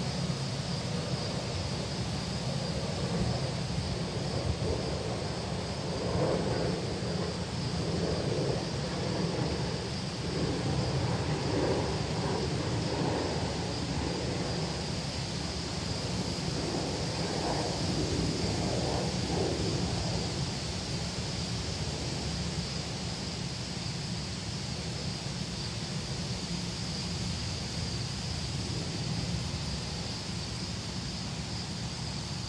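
Steady outdoor background noise: a low wind rumble on the microphone under a constant high hiss. A fainter, irregular murmur comes and goes through the middle stretch.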